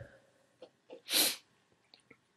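A person's single short, sharp sneeze-like burst of breath about a second in, with a small puff just before it.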